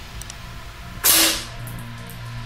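A single sharp shot from a spring-piston air rifle about a second in, dying away quickly.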